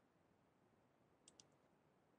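Near silence, with two faint clicks close together a little over a second in.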